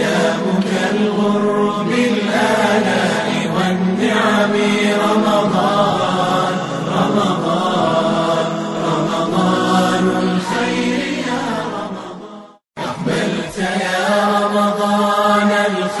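Arabic Ramadan nasheed: voices chanting a drawn-out melody over a steady low hum. It breaks off for a moment about twelve and a half seconds in, then resumes.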